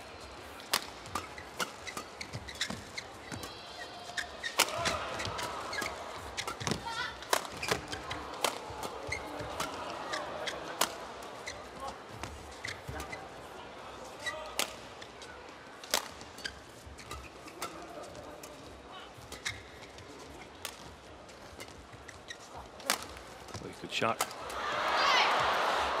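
Badminton rackets striking a shuttlecock in a long rally: sharp cracks at irregular intervals, with arena crowd noise rising and falling behind them. Near the end the rally ends in a loud burst of crowd cheering.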